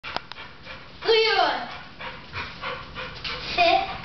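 A dog gives one loud bark-like call about a second in, its pitch sliding down. A child's voice speaks briefly near the end.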